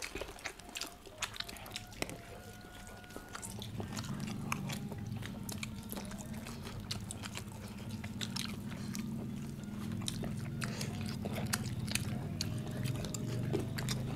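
Several people eating close to the microphone: chewing and lip-smacking, heard as many small scattered clicks. From about two seconds in there is a low steady hum underneath.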